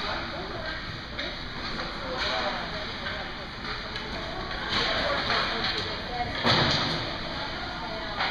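Indoor ice rink during a children's hockey practice: indistinct voices of children and adults over steady background noise, with louder bursts of noise about five and six and a half seconds in, the second the loudest.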